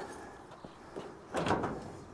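Steel shed door being unlatched and opened: a few small clicks from the handle and lock, then a louder clunk about a second and a half in.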